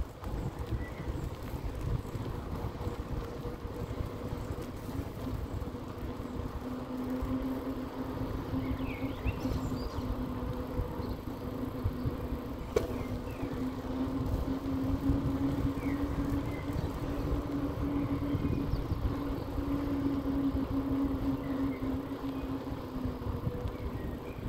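Electric bicycle riding along a paved street, with steady wind and tyre rumble on the microphone. A steady motor whine comes in about six seconds in and fades near the end. A few bird chirps and a single click about halfway through.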